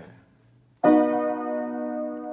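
Upright piano: after a brief hush, a B major chord is struck about a second in and held, ringing steadily as it slowly decays.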